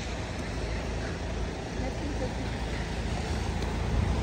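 Road traffic on a wet street, with a car driving up and pulling in at the kerb: a steady low engine rumble and tyres hissing on the wet road, growing a little louder toward the end.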